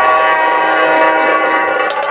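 Harmonium holding a loud, steady chord of several notes, with light ticks from a small percussion instrument keeping time about four times a second.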